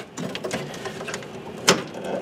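Hands working at a combi boiler's flow sensor and its pipework: light rubbing and a run of small clicks from plastic and metal parts, with one sharper click near the end.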